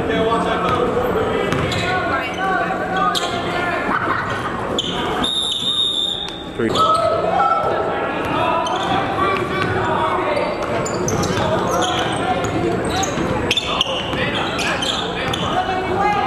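Basketball dribbled on a hardwood gym floor, the bounces echoing in a large hall over a steady background of crowd voices. A steady high tone lasts a little over a second about five seconds in.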